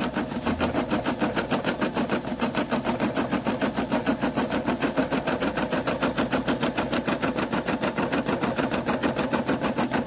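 Brother SE600 embroidery machine stitching a leaf design through vinyl, its needle going up and down in a fast, even rhythm.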